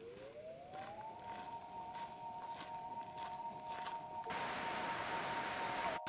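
Electronic sound-design tone of two notes that glides up in pitch over the first second and then holds steady, over faint regular ticks about one and a half a second. A hiss comes in suddenly about four seconds in, and the whole builds gradually in loudness.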